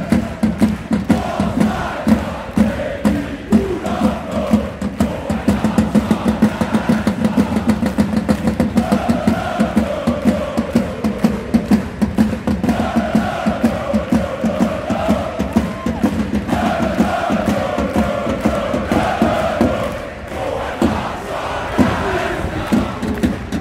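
Large crowd of football supporters singing a chant together, driven by steady beats on big bass drums.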